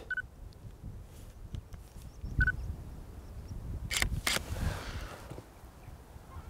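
A camera's two short electronic beeps, then its shutter firing a quarter-second exposure: two sharp clicks about a third of a second apart as it opens and closes. A low wind rumble on the microphone underneath.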